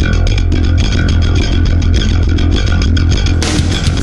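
Recorded Japanese thrash metal song: a break where the bass guitar carries the riff over drum hits, with the full band and distorted guitars coming back in about three and a half seconds in.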